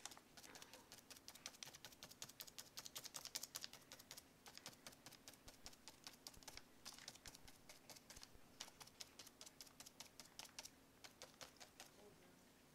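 Faint, quick runs of taps and scratches as a worn paintbrush with only a few dried-up bristles is dabbed and dragged across a notebook page, with short pauses between runs.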